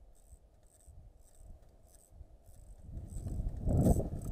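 Rubbing and scraping, faint at first and growing much louder about three seconds in, as a climber's gloved hands and gear move against a beech trunk close to the microphone.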